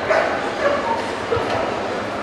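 A dog giving several short, high barks over the steady chatter of a crowd.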